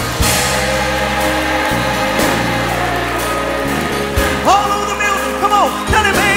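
Gospel music from a church band: steady held chords over a bass line, with a single voice rising, holding and falling briefly near the end.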